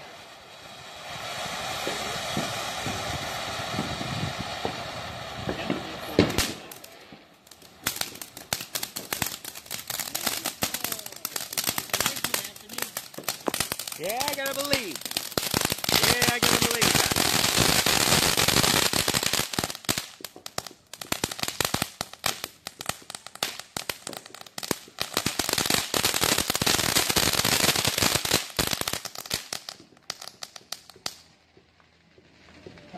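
Aerial fireworks crackling in long runs of rapid, dense pops, with stretches of steady hiss between the bursts.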